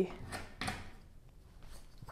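Two soft, brief handling sounds in the first second as a pottery knife tool is picked up from among the tools on a table, then a quiet room.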